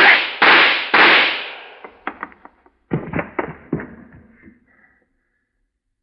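Three .25 pistol shots in quick succession in the first second, each dying away slowly, a radio-drama gunshot sound effect. A scatter of lighter knocks follows and fades out.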